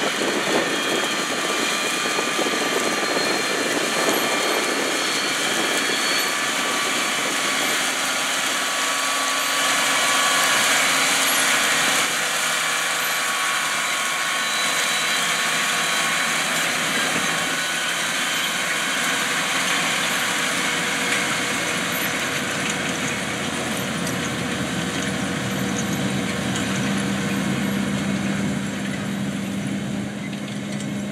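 John Deere 8360RT track tractor's diesel engine running steadily under load as it pulls a 40-foot 1795 planter through stubble. Its tone shifts a little partway through and again near the end.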